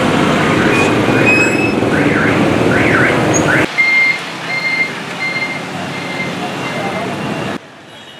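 Street traffic noise with motorbikes and voices, loud for the first few seconds. After a cut, quieter traffic with an electronic beep repeating steadily about every 0.6 s, like a vehicle's warning beeper.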